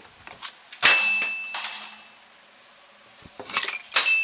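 A metal object is struck and clangs about a second in, ringing with a clear high tone for over a second. Near the end come a few more knocks and clatter, then another clang with the same ring.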